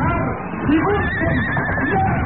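Radio-drama sound effect of a horse whinnying: a wavering high call through the second half, over a busy background.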